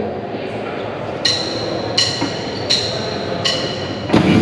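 Four evenly spaced, ringing wooden-sounding clicks, about three-quarters of a second apart, counting a rock band in to a song.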